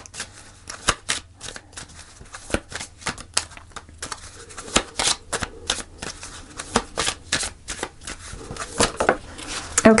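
Oracle cards being shuffled by hand: a continuous, irregular run of soft card clicks and riffles.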